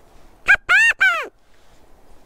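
Hand-blown quail call giving three quick notes, each rising then falling in pitch, the middle one the longest, in imitation of a quail's assembly call. It is blown to call out to a scattered covey and draw answering calls that show where the birds are.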